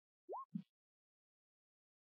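A single short, faint bloop that rises quickly in pitch, followed at once by a brief low blip, then near silence.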